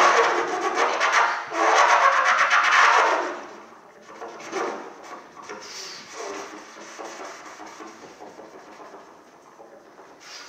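Trumpet played with extended technique: a loud, breathy, noisy blowing with a fast fluttering texture rather than clear notes for about three seconds, then much quieter, broken sputters of air through the horn that fade away.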